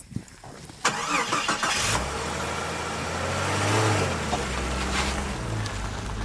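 A car driving, heard from inside the cabin: steady road noise comes in suddenly about a second in, with a low engine hum that swells a little midway.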